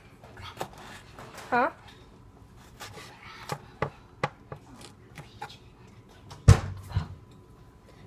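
Kitchen knife chopping a pepper on a cutting board: scattered, irregular knife taps, then a heavier thump near the end.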